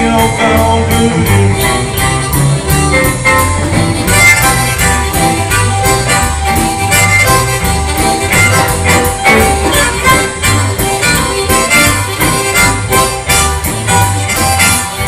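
Live blues/rock-and-roll band playing an instrumental break: a steady drum beat, electric bass and electric guitar, with a reedy, sustained lead line over them.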